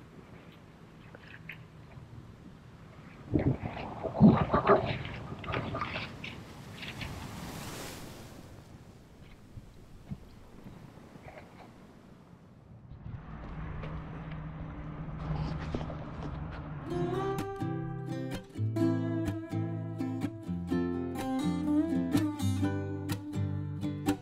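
Crackling and rustling of dry pine needles and grass as a porcini mushroom is worked out of the ground, loudest a few seconds in. In the last third, plucked acoustic guitar music comes in.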